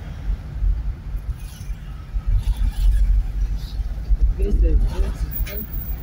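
Low, steady rumble of a car driving, heard from inside the cabin: road and engine noise. A faint voice comes in about four and a half seconds in.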